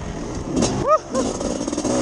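Two-stroke dirt bike engine running and revving up and down as the bike is ridden along the trail.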